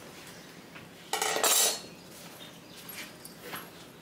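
A short metallic scrape and clatter as the fittings of a stopped table saw are handled on its cast-iron top. It comes once, suddenly, about a second in, and lasts under a second; the saw blade is not running.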